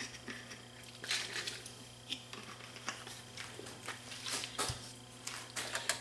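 Faint scattered rustles, taps and small clicks of hands wetting a cotton swab with cleaning fluid, with a soft thump about four and a half seconds in, over a steady low hum.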